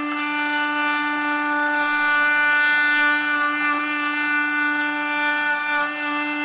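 Small router with a chamfer bit, mounted under a chamfering table, running steadily at speed with a constant, even whine.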